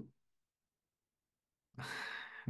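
Near silence as a video call's audio drops out completely. Near the end a breathy exhale starts, the beginning of a laugh.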